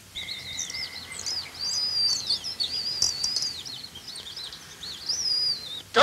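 A songbird singing a continuous, rapid warbling song of high chirps and trills, with a steady high whistle held under it for about the first second and a half.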